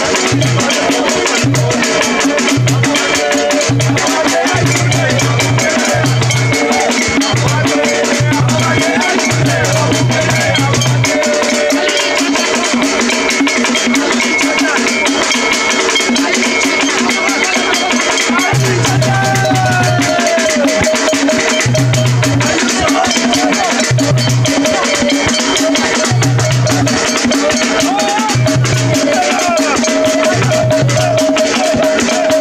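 Traditional Bakoko mbaya music played live: a group of voices singing over fast, dense percussion, with a wooden log drum struck with sticks.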